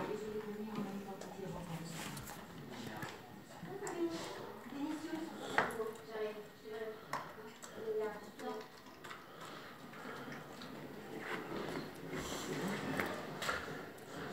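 Indistinct voices of people talking, with a single sharp knock about five and a half seconds in.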